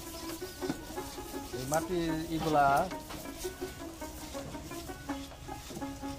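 A chicken calls once, loudly, for about a second, about two seconds in, over a steady background of music.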